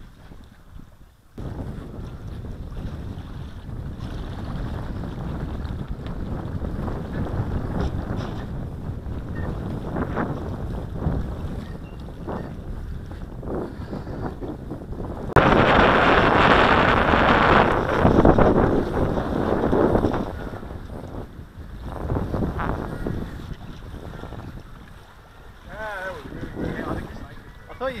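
Wind buffeting the microphone: a rumbling noise that starts suddenly about a second in and turns louder and brighter for several seconds from about halfway through. A person's voice is heard briefly near the end.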